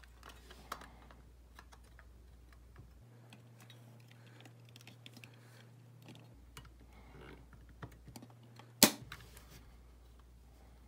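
Small clicks and taps of a white plastic grille being handled and pressed onto the red pressed-steel cab of a 1970s Tonka pickup, with a few quick clicks near the end and one sharp snap just before nine seconds in.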